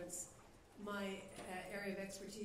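A woman speaking into a lectern microphone, with a short pause about half a second in.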